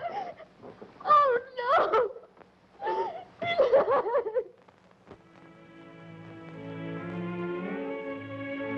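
A woman's distraught cries and sobs in three bursts over about four seconds. Then orchestral string music fades in on held chords and slowly swells.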